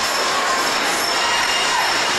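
Music Express ride cars rolling around their circular track at speed: a steady rolling rumble of wheels on the track with faint high tones, heard from aboard a car.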